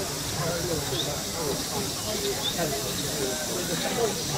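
Live-steam Gauge 3 model locomotive hissing steadily as it runs, with faint voices of people talking in the background.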